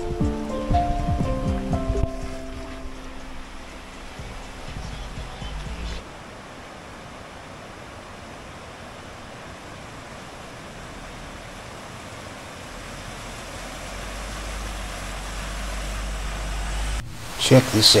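Background music fades out in the first few seconds. Then a steady rush of water running over a flooded causeway, growing louder with a rising low rumble as a four-wheel drive comes through the water. It cuts off suddenly near the end.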